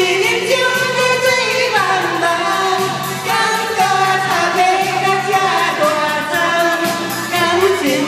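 Chinese pop song playing over loudspeakers: a singer's voice carrying the melody over a steady, repeating backing beat.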